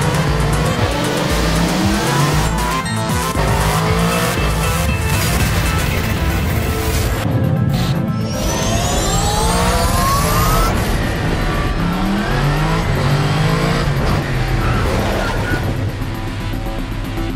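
Yamaha MT-125 motorcycles' single-cylinder engines revving and accelerating again and again, each rev rising in pitch, over a music soundtrack. About halfway through, the sound cuts out briefly, then comes back with one long rising whine.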